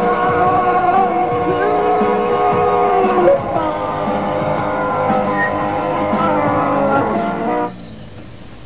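Rock band playing live, an instrumental passage with a sustained, bending electric guitar lead over the band. The music cuts off abruptly near the end as the song ends.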